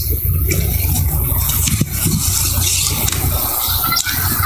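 Steady low rumble with a hiss over it, the open-air ambience picked up by the ceremony's microphones between speakers.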